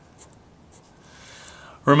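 Faint short strokes of a felt-tip permanent marker writing on paper.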